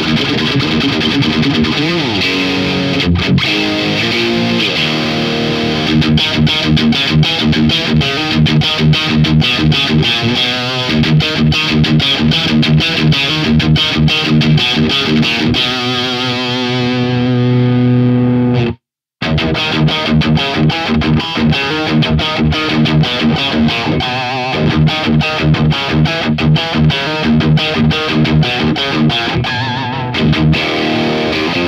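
Distorted electric guitar on a single-coil pickup, played through a Hotone Mojo Attack pedalboard amp: high-gain rhythm riffing with quick palm-muted chugs and a held chord around 16 seconds in, a sudden brief cut to silence just before 19 seconds, then the riffing resumes. A tone the player hears as closer to a Marshall Plexi or JCM 900 than the advertised Mesa sound.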